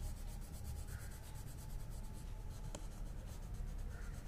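A colouring tool scratching on a paper worksheet in quick back-and-forth strokes as a shape is filled in.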